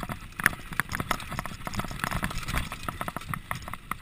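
Mountain bike clattering down a bumpy dirt singletrack: a dense run of irregular knocks and rattles from the bike as its tyres hit the rough trail, over a low tyre rumble.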